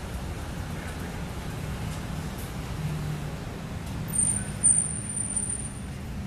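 Steady low rumble of road traffic. About four seconds in comes a thin, high-pitched squeal lasting about a second and a half, broken once partway through.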